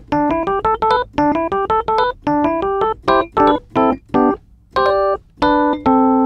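A keyboard plays an R&B lick over A minor seven, harmonized in sixths so that every note is a two-note pair. It runs as a quick string of paired notes, pauses briefly about four and a half seconds in, then ends on a held two-note chord.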